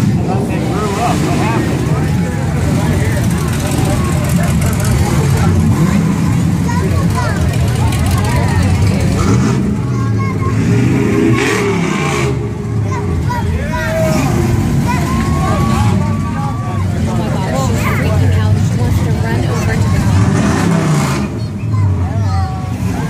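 Hot rod engines running at low speed as the cars roll past, a steady low rumble, with one engine rising and falling in pitch about ten to thirteen seconds in. Crowd chatter runs underneath.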